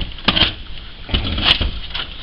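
Knocks and scrapes of old electronic test equipment being shifted and handled among piled junk, with a few sharp knocks, one about a third of a second in and more around a second and a half.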